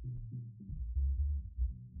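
Muffled jazz in which only the low end comes through: an upright bass walking from note to note, with faint drum taps.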